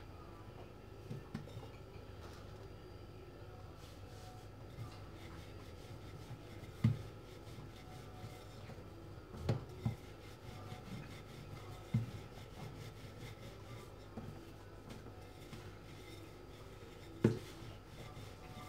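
Puff pastry being handled and rolled out with a wooden rolling pin on a floured granite countertop: faint rubbing, with a few knocks on the counter, the loudest near the end.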